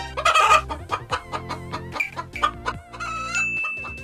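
Chicken clucking, with a rooster crow ending about half a second in, over background music.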